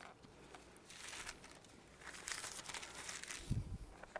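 Thin Bible pages being turned and rustled close to the pulpit microphone, in a few rustling spells, with a low thump near the end.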